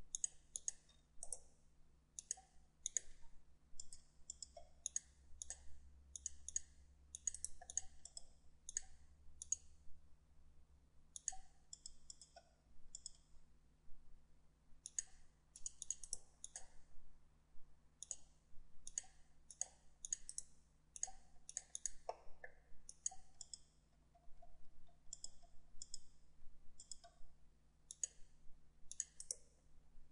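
Computer mouse and keyboard clicking in irregular clusters, several clicks a second with short pauses between runs, over a faint steady low hum.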